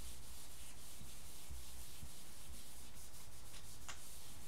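A handheld whiteboard eraser rubbing across a whiteboard, wiping off dry-erase marker writing with a steady, soft scrubbing sound. A short, sharper sound comes just before the end.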